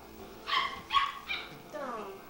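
A small dog yips three times in quick succession, then gives a falling whine.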